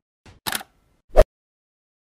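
Short clicks from a logo animation's sound effects: a faint tick, then a sharp double click about half a second in, and a louder, fuller click just after a second.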